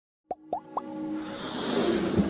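Animated logo-intro sound effects: three short rising blips about a quarter second apart, then a swelling whoosh over a held electronic tone that builds toward the end.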